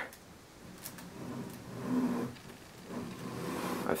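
Quiet handling sounds as a large Lego brick mosaic is shifted about on a table by hand, with a brief low hum about two seconds in.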